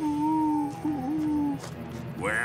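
A man's voice giving a cartoon werewolf howl: one long held note that sinks slightly in pitch, wavers briefly about a second in, and stops about a second and a half in.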